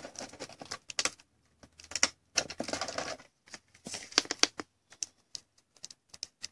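A clear plastic card holder and trading card being handled: irregular small clicks and crinkles of plastic.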